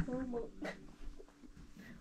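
A voice trailing off in the first half-second, then a quiet room with one soft click a little later; no guitar is being played.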